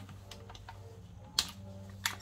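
Light clicks and taps from a Milwaukee cordless ratchet being handled and fitted onto a brake caliper bolt, with one sharper click about a second and a half in, over a low steady hum.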